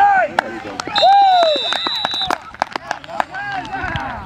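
Spectators shouting as a ball carrier is tackled. About a second in, a referee's whistle blows one steady blast of just over a second, signalling the play dead.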